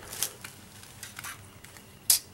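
Faint handling noises: a few short clicks and light rustles as a used intake manifold gasket is handled and set down on a concrete floor.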